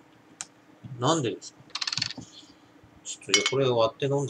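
A plastic screw cap twisted off a bottle, a quick run of clicks about two seconds in, with a single click shortly before. Low wordless murmurs from a man come just before and after it.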